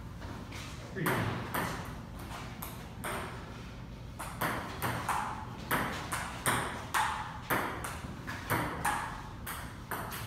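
Table tennis rally: the celluloid ball clicks sharply off the paddles and the tabletop, about two or three hits a second, starting about a second in and stopping near the end.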